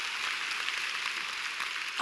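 A congregation applauding: a steady, even patter of many hands clapping.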